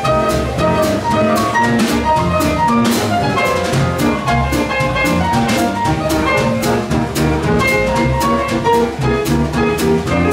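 Jazz piano trio playing a blues live: grand piano runs over a walking upright double bass, with the drum kit's cymbals and drums keeping a steady beat.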